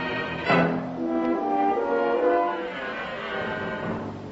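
Orchestral film score with a French horn playing a slow melody of held notes, with a short noisy burst about half a second in.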